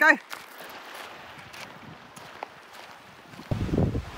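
A soft steady hiss of outdoor wind. From about three and a half seconds in, a sudden louder low rumble of wind buffeting the microphone.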